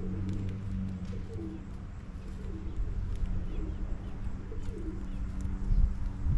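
Pigeons cooing in repeated low, rolling coos over a steady low hum, with faint small-bird chirps and a low thud near the end.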